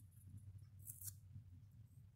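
Faint scratch of a graphite pencil drawing a line on paper, with a short stroke about a second in, over a steady low hum.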